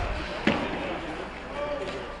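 A single sharp knock from hockey play about half a second in, over the steady low noise of the ice rink.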